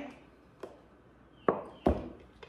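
A faint click about half a second in, then two sharp knocks about a third of a second apart near the end, as a carton of beef broth is capped and set down on a stone countertop.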